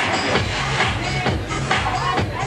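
Loud electronic dance music from a club sound system, with a steady, evenly spaced beat.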